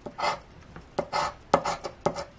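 A metal scratcher token scraping the coating off a paper scratch-off lottery ticket in a run of short, quick strokes, with a couple of sharp clicks where its edge catches the card.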